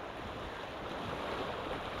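Sea surf washing and breaking against the rocks of a breakwater, with wind on the microphone: a steady rushing noise.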